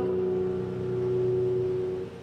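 Musical accompaniment holding one sustained chord after the singing stops. It fades slightly and drops away near the end.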